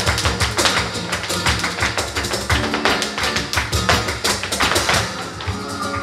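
Live flamenco with no singing: a fast run of percussive strikes from the dancers' footwork on the stage floor, mixed with cajón, hand-clapping (palmas) and guitar.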